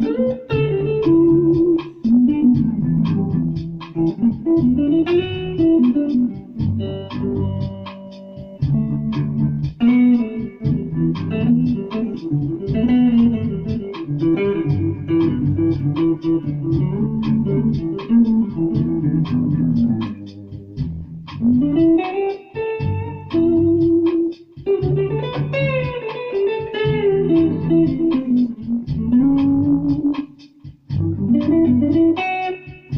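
Ibanez SZ320 electric guitar with Seymour Duncan Pearly Gates pickups, played through a Roland Micro Cube amp: a run of picked melodic phrases with a few brief breaks.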